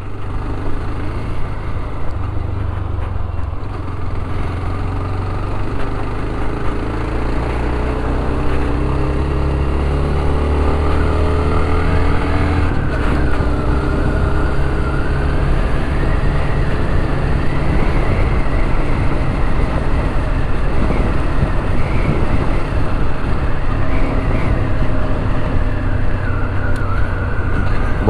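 Dafra Next 300 motorcycle engine running under way, heard from the rider's seat. Its pitch rises and falls several times as the bike accelerates and shifts.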